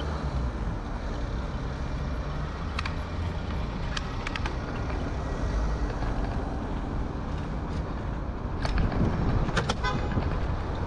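Steady low wind and road noise from riding a bicycle through city traffic, with a few short sharp clicks, more of them near the end.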